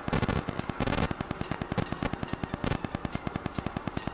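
Microphone static: a steady, rapid train of crackling clicks, about ten a second. It comes from the substitute microphone used instead of a lapel mic, which puts more static than normal on the recording.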